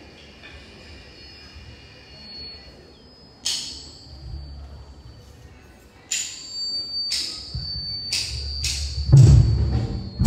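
Percussion starting up: a few sharp strikes with a short ringing tail, spaced out at first and then coming about twice a second, followed by a heavy low drum hit near the end as music gets going.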